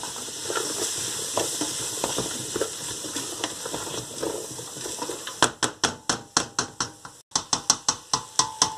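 Diced vegetables sizzling in oil in a stainless steel pot while being stirred with a wooden spoon. In the last few seconds the stirring turns into a run of sharp clicks, about four a second, as the spoon knocks against the pot.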